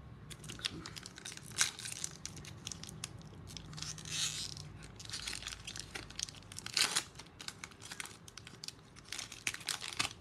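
Foil Magic: The Gathering booster pack wrapper crinkling and tearing as it is handled and opened. It makes a run of sharp crackles, with louder bursts every two to three seconds.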